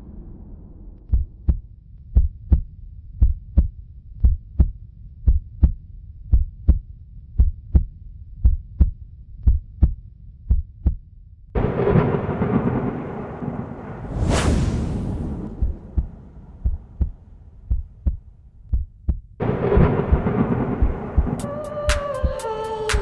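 Intro soundtrack built on low heartbeat-like double thumps, about a pair a second. About halfway it swells into a fuller, denser sound with a whoosh, drops back to the thumps, then swells again near the end.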